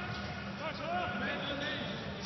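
Faint, distant shouts of footballers calling out on the pitch, over a low steady hum.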